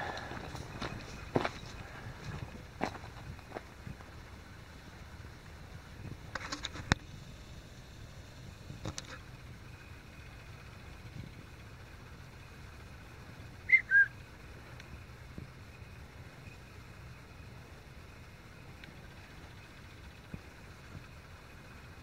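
Footsteps on a gravel bush track for the first few seconds, then quiet night bush with a faint low hum. About two-thirds of the way through comes one short, sharp chirp that falls in pitch over two notes.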